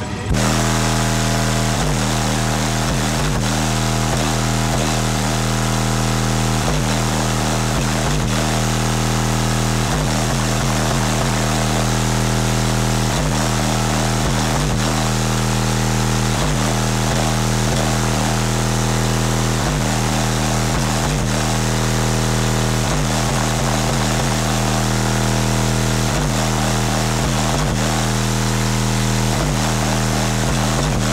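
Car audio subwoofer system, Rockford Fosgate, playing one sustained low bass tone at high level. It comes in suddenly and holds steady without a break.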